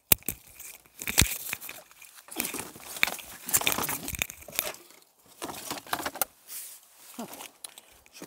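Crinkling, crackling rustle of junk and debris being handled and shifted, in several bursts, with two sharp knocks in the first second or so.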